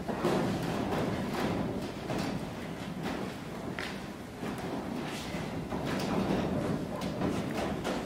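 Dry-erase marker drawing lines on a whiteboard, a run of short scratchy strokes with scattered taps and knocks, as a table is ruled out.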